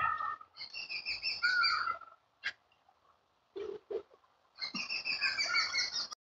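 A bird calling in two warbling phrases, each lasting a second or more, with a sharp click and two short low sounds in the quiet gap between them.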